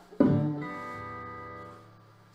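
Acoustic guitar knocked as it is set down on its stand: a sudden hit sets the open strings ringing, and they die away over about a second and a half.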